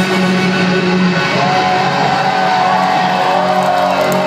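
Live rock music played loud in a club, with electric guitar to the fore; a long held note comes in about a second and a half in.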